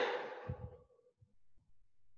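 A person's frustrated sigh: one sharp, breathy exhale that starts loud and fades out within about a second.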